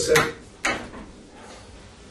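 Sliding whiteboard panel being moved along its track, with a sudden sharp knock about two thirds of a second in.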